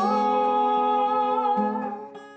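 A man and a woman singing together over an acoustic guitar, holding one long note that ends shortly before the close.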